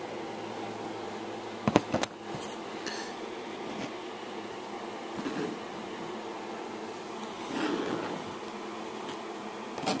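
A paintbrush dragging oil paint across canvas in a few soft strokes, over a steady hum. Two sharp clicks come about two seconds in.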